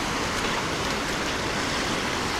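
Steady rushing of shallow river rapids, fast water running over a rock shelf.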